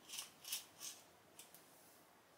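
Slim steel tension rod being twisted and pulled out by hand, its telescoping sections giving short, faint scraping rattles: three close together in the first second and a softer one a little later.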